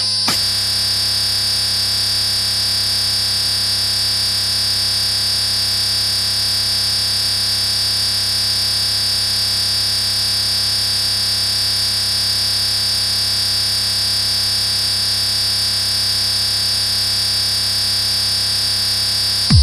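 A steady electronic buzzing drone of several held tones with a high whine on top, unchanging, like a sustained synthesizer or alarm-like tone in a DJ mix.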